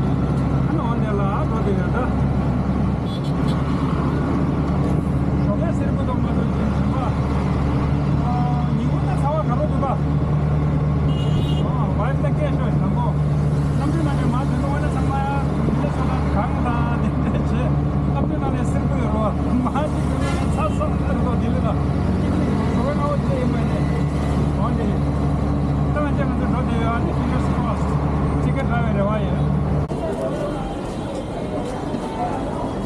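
Auto-rickshaw engine running steadily under way, a low drone with road and traffic noise, heard from inside the open cab.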